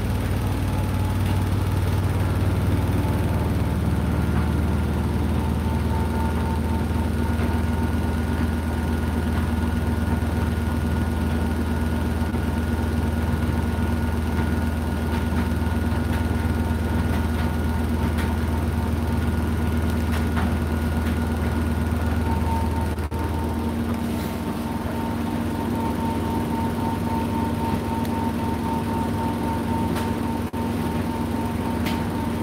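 Hotpoint inverter-motor washing machine running near the end of its cycle, one minute left: a steady low mechanical hum with a faint high whine. About three-quarters of the way through the low hum drops and a higher tone comes up as the machine changes speed.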